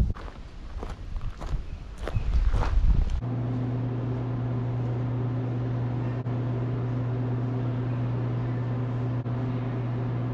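Irregular rustling and low wind rumble on the microphone for about three seconds. It cuts off suddenly to a steady, even electrical machine hum with a low buzz, which runs on unchanged.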